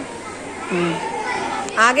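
Speech: children's voices chattering, with a woman's voice saying a word near the end.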